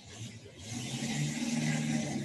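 Motorboat engine running steadily as a boat passes close by on a canal, getting louder about half a second in.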